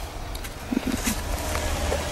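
Soft scratches of a ballpoint pen writing on spiral-notebook paper over a low steady hum.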